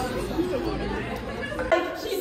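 Overlapping chatter of several young women's voices over a low background hubbub. A sharp click about 1.7 seconds in marks where the background sound cuts off abruptly.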